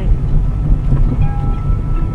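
Loud, steady low rumble of road and engine noise inside a moving car's cabin, with a thin steady tone coming in about a second in.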